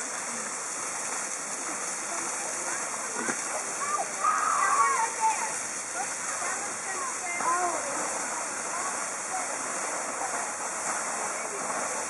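Geyser fountain's tall jet of water rushing and splashing down steadily. People's voices come through over the water, loudest about four to five seconds in.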